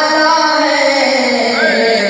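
A young man singing an Urdu naat unaccompanied into a microphone, with long held notes that slide in pitch.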